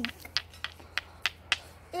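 Two hand-held stones being knocked together, a series of sharp clicks about three a second, struck to try to make a spark for a campfire.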